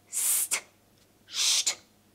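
A woman hissing the consonant cluster "pst" twice, unvoiced, each a short hiss ending in a crisp "t": a breathing exercise that works the diaphragm.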